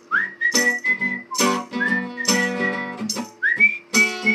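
A man whistles the melody over a strummed acoustic guitar. Twice the whistle swoops up into a phrase of held notes, while the guitar strums keep a regular beat beneath.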